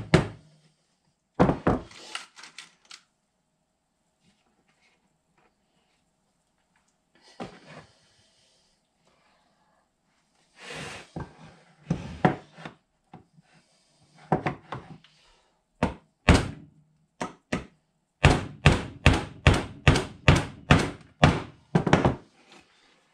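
Claw hammer driving a nail into a wooden board: scattered blows at first, a pause of several seconds, then a steady run of blows, about three a second, near the end.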